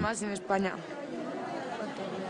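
Voices: a few spoken words at the start, then quieter background chatter of several people.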